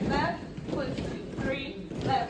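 People talking in a large room, with sneaker footsteps knocking on a portable stage platform.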